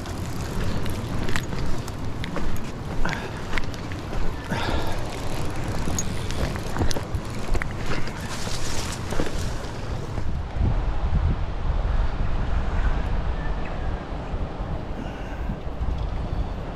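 Steady rush of river water with wind buffeting the microphone, and scattered knocks and scuffs of footsteps and gear on river stones through the first ten seconds. After that the low wind rumble grows.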